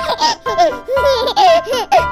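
A baby giggling in a run of short laughs over cheerful children's background music.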